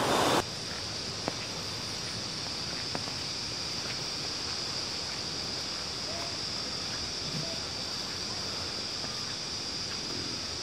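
A rocky mountain stream rushing loudly, dropping suddenly about half a second in to a steady, quieter outdoor background with a constant high-pitched whine over it and a couple of faint ticks.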